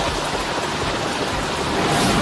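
Loud rushing, hissing sound effect for a dark shadow technique streaking across the ground, swelling toward the end.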